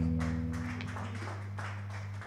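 The band's last chord rings out through the electric guitar and bass amplifiers and slowly fades away at the end of the song, with a few faint clicks over it.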